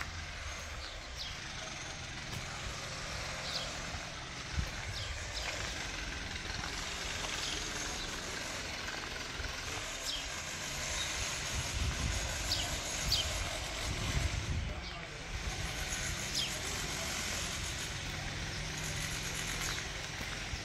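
Open-air ambience: an irregular low wind rumble on the microphone, with short high chirps every few seconds.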